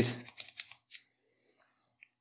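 A few faint short clicks of a plastic pipette against a small dish of blue ink as the stain is stirred, in the first second, then near silence.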